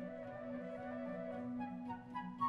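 Orchestra playing a flute melody over rippling harp arpeggios, with a sustained low note held underneath.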